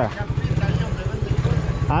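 Small motorcycle engine idling at a stop with a rapid, even low pulse.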